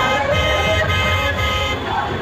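A vehicle horn held for about a second and a half over steady street noise.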